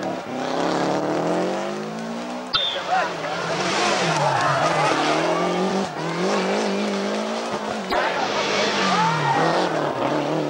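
Rally cars' turbocharged four-cylinder engines revving hard one after another through a tight corner, including Lancia Delta Integrales, their pitch climbing steadily as they accelerate and dipping and rising again with braking and gear changes. The sound breaks off abruptly three times as one car gives way to the next.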